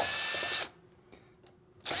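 Cordless drill with a thin Phillips bit backing out the screws on an oar sleeve, run in short bursts: one burst stops about two-thirds of a second in, and another starts near the end.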